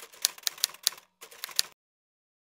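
Typewriter key clicks as a sound effect, one strike per letter as a title is typed out. The clicks pause briefly about a second in, then stop shortly before the end.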